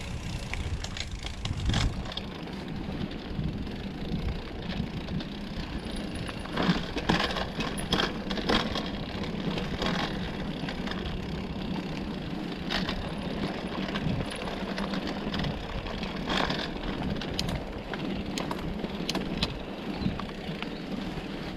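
Mountain bike ridden over a dirt trail: continuous tyre and wind noise, with frequent rattles and clicks from the bike over bumps and a steady low hum underneath.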